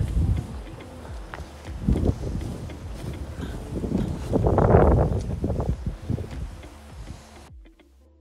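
Wind buffeting a phone's microphone outdoors: a low, noisy blustering that comes and goes in gusts, loudest a little past halfway, then cuts off suddenly near the end.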